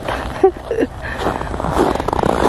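Footsteps on hard-packed snow and ice, with a couple of short vocal sounds in the first second.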